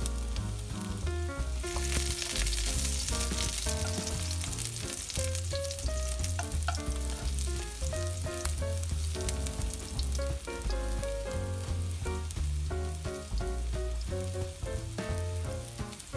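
Minced garlic sizzling in hot oil in a nonstick wok and being stirred with a spatula, frying until fragrant. A steady hiss of frying runs under background music with a bass line.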